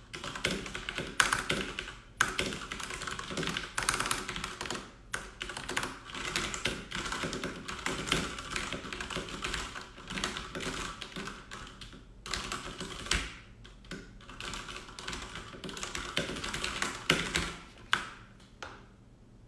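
Typing: a rapid, irregular run of key taps and clicks, broken by a few short pauses.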